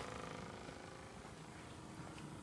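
RV-style electric water pump running with a faint, steady hum, building up pressure in the line while the shower head is shut off.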